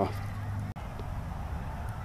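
Steady low background rumble with no distinct events, broken by a brief dropout at an edit cut just before halfway through.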